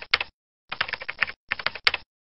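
Computer keyboard typing sound effect: rapid key clicks in three short runs, with brief pauses between them.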